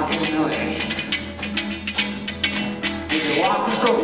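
Acoustic guitar strummed in a quick, steady rhythm, with the rapid slaps and claps of hand-jive body percussion on top.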